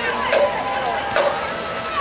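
Spectators talking and calling out near the camera in the stadium stands, with two sharp clicks, about a third of a second and a little over a second in.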